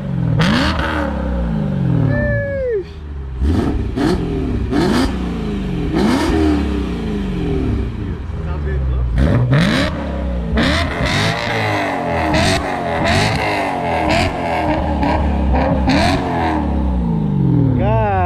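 BMW E92 M3's 4.0-litre V8 revved repeatedly through a valved aftermarket full exhaust system. Each throttle blip rises and falls in pitch, with sharp cracks between revs.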